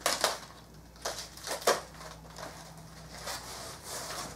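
Packing wrap being pulled apart and unwrapped by hand: a few sharp crinkles in the first two seconds, then softer rustling.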